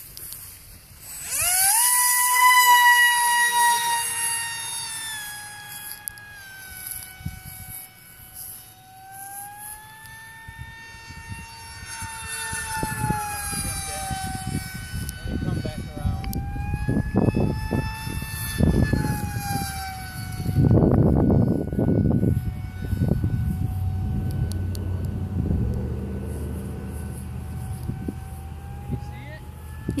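Electric motor of a radio-controlled Hadron jet on a 4S battery: a high whine that comes in loud about a second and a half in, just after the hand launch, then sinks and rises in pitch and grows fainter as the plane flies away. In the second half, wind gusts buffet the microphone.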